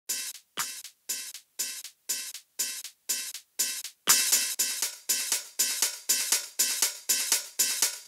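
Intro of an electronic dance track: a thin percussion loop with the bass filtered out, a hit about every half second, filling out and getting busier about halfway through.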